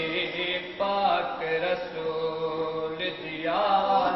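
A young man's voice reciting a noha, an Urdu Shia lament, in long held chanted notes. A short break comes just under a second in, a long sustained line follows, and a new rising phrase starts near the end.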